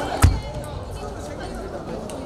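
Hubbub of voices in a large sports hall with scattered clicks of table tennis balls, and one sharp knock with a dull thump about a quarter of a second in.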